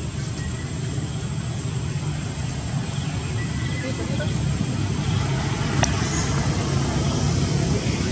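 Steady low outdoor rumble, like distant traffic or wind on the microphone, with a single sharp click about six seconds in.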